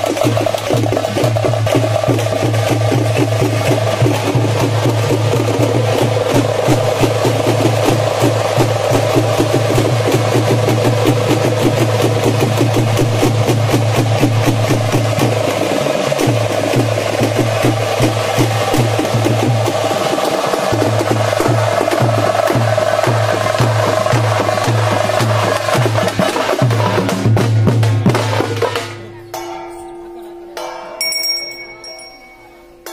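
Traditional frame drums played in a fast, dense, continuous rhythm, with a low tone beneath that breaks off briefly a few times. The drumming falls away shortly before the end.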